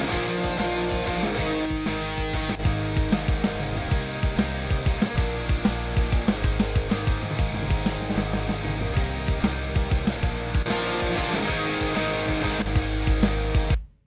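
Playback of a song's rough mix from the session: electric guitars over bass and drums, played without their trim reduction. The music stops abruptly at the end.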